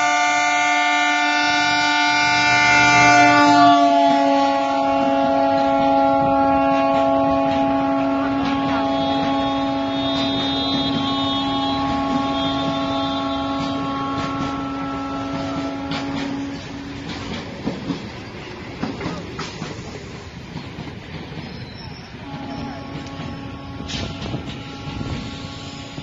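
Diesel locomotive horn held in one long blast as a passenger train rushes past, its pitch dropping about four seconds in as the locomotive goes by. The horn stops after about sixteen seconds, leaving the coaches' wheels clattering over the rail joints, then sounds again near the end.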